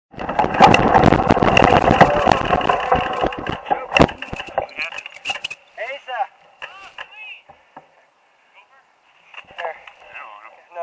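Mountain bike rattling and clattering over a dirt trail, picked up by a camera mounted on the bike, dying away about four seconds in; faint scattered knocks and a brief muffled voice follow.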